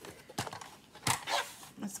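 Plastic sliding paper trimmer being handled and set down on a table: two knocks, the second and louder about a second in, followed by a brief rattle.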